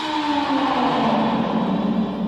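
Electric guitar in a psychedelic rock track holding one sustained note that slides slowly down in pitch, with no drums playing.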